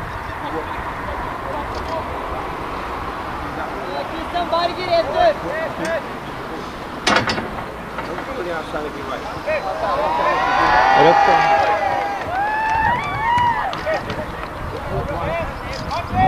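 Distant shouting voices of players across an outdoor football pitch over a steady background hum. A single sharp knock comes about seven seconds in. Several voices shout together for about two seconds, about ten seconds in, the loudest part.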